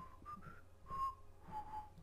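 A person whistling a few short notes, the last one held a little longer and lower, with a few faint clicks.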